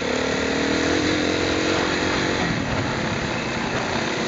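Off-road motorcycle engine running under way on a dirt track, its note rising slightly about a second in and easing off about halfway through, over a steady rush of wind and ground noise.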